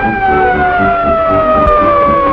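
Fire engine siren wailing, one long tone slowly falling in pitch, over a rhythmic low pulsing.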